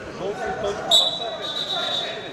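Referee's whistle blown once, a single steady high note lasting about a second, signalling the wrestlers to resume the bout.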